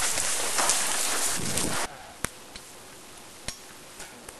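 A loud, even hiss-like noise that cuts off suddenly about two seconds in, leaving a quiet background broken by two sharp clicks.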